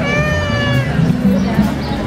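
Crowd chatter over outdoor music, with a single high, slightly falling tone lasting almost a second at the start.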